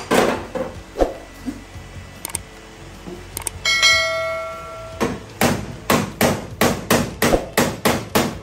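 Hammer blows on the steel sheet metal of a car's rear body panel: a few strikes at the start, then a steady run of about three blows a second through the last three seconds. Near the middle, a bell-like subscribe-button chime rings for about a second and is the loudest sound.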